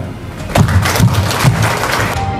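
Audience applause breaking out about half a second in, right after the inauguration is declared, over background music with a low beat.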